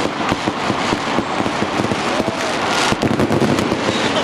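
Fireworks going off in quick succession: a dense, continuous run of bangs and crackles.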